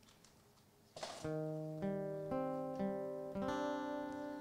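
Acoustic guitar beginning a slow song intro. After a near-quiet first second it comes in with a chord, then picks single notes about every half second that ring on over one another.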